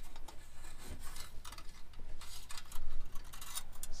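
Fish wire scraping and rubbing against the metal of a car's frame rail as it is fed through the holes, in short irregular scratchy strokes that come thicker in the second half.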